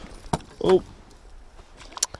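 Two sharp clicks, one about a third of a second in and one near the end, with a man's short exclamation 'Oh' between them.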